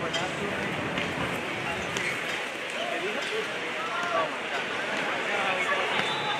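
Steady hubbub of a stadium crowd, with scattered voices calling out over it during a beach volleyball rally.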